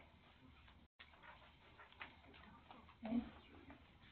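Faint meeting-room murmur: indistinct voices with small scattered clicks and knocks, and a brief louder vocal sound about three seconds in. The recording drops out for a split second about a second in.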